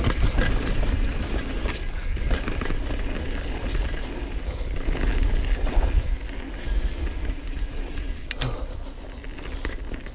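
Mountain bike being ridden fast down a dirt trail, heard from a camera on the rider: wind rumbling on the microphone, tyres rolling over dirt, and the bike's chain and frame rattling over bumps. Two sharp clicks come a little after eight seconds in, and the sound gets quieter over the last two seconds.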